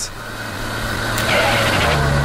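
Sound effect of a motor vehicle driving up: a steady low engine hum under a rushing noise that grows louder.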